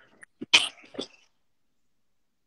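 A person's short cough: a few brief bursts in the first second, the loudest just after half a second, stopping by about a second and a quarter.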